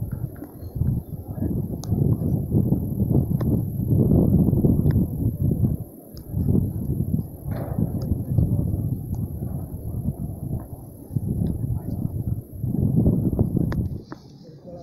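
Wind buffeting a phone's microphone: a low rumbling rush that swells and drops in gusts, with a few faint clicks.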